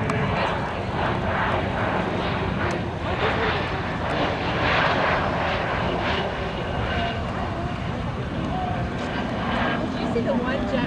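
Jet aircraft engine during a low flyby, a steady rushing noise throughout, with voices faintly in the background.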